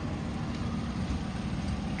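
A 2001 Toyota Avalon's 3.0-litre V6 idling steadily, a low, even rumble heard from beside the car. The seller says the engine has a slight misfire.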